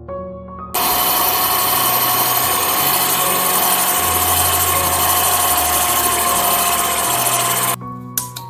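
White electric stand mixer with spiral dough hooks running at steady speed, kneading flour, yeast and liquids into donut dough. Its motor whine starts suddenly about a second in and cuts off just before the end.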